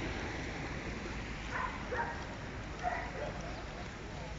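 Outdoor city ambience: a steady low rumble with a few faint short calls or voices in the distance, about one and a half, two and three seconds in.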